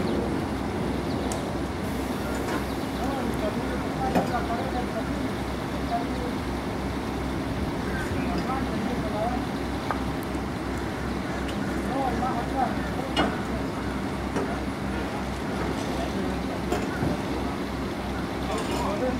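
A crane's diesel engine running steadily with a low, even throb, under faint background voices. A couple of sharp metal clinks come about four seconds in and again near the middle.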